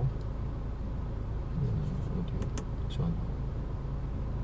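Steady low rumble in a car's cabin, with a brief murmured voice about one and a half seconds in and a few light clicks just after from the infotainment system's hard buttons being pressed.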